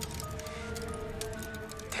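Film score music holding sustained tones, with scattered small crackling ticks over it.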